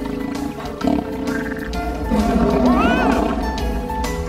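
Cartoon monster's snarling roar over background music, loudest in the second half, with a rising-then-falling cry near the end.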